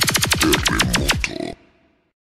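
Electronic sound effect from a sonidero DJ spot: a rapid run of sharp, stuttering pulses that slow slightly, cut off about one and a half seconds in.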